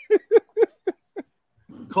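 A man laughing: about five short bursts of laughter in the first second or so, coming more slowly and growing weaker as they go.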